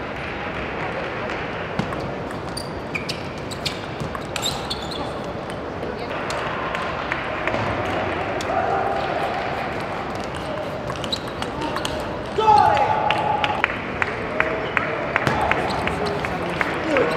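Table tennis rallies: a table tennis ball clicking sharply off the bats and table in quick succession, a short run early on and a faster, regular run near the end, over the hum of voices in a large hall. A loud voice-like cry rings out just before the final rally.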